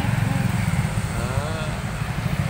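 Steady low rumble of passing motorcycle traffic.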